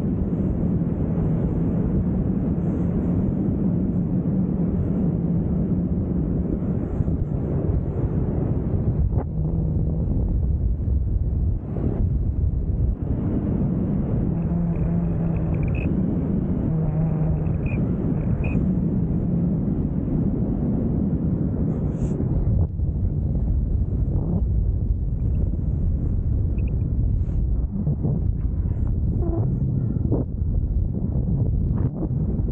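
Wind rushing over a camera microphone during flight under a parachute canopy: a steady low rumble with faint humming tones coming and going.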